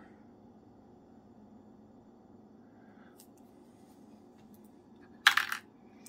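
Quiet room tone with a few faint ticks, then a short, loud clatter of small hard objects on a hard surface about five seconds in.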